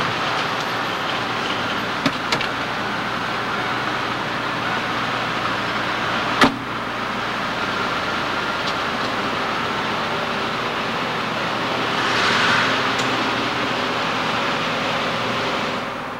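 A stretch limousine at the kerb and then pulling away over steady city traffic noise. A few sharp clicks are heard, the loudest about six seconds in, and the noise swells briefly around twelve seconds.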